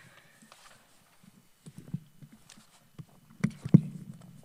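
Handheld microphone being handled and passed from one person to another: scattered knocks, clicks and low bumps on the mic, the loudest near the end.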